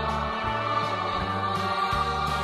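Music with a choir singing sustained notes over a bass line that changes note about every half second.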